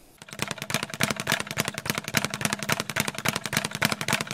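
A fast, even run of sharp knocks, many to the second, with a faint steady tone beneath.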